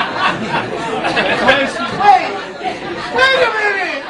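Several people talking over one another: overlapping chatter with no single voice clear.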